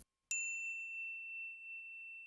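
A single high, bell-like ding: one strike that rings on as a clear tone and fades slowly, as an editing sound effect.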